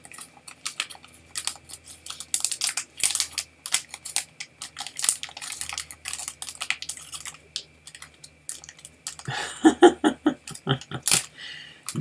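Trading cards being opened, shuffled and handled, with clear plastic card holders and wrappers crinkling: dense, irregular small clicks and rustles. A brief murmur of voice comes about nine and a half seconds in.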